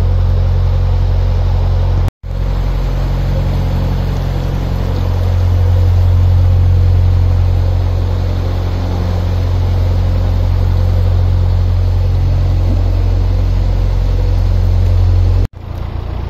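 A narrowboat's diesel engine chugs steadily at low cruising speed with a deep, even hum, under the loud roar of motorway traffic as the boat passes beneath a motorway bridge. The sound cuts out briefly about two seconds in and again near the end.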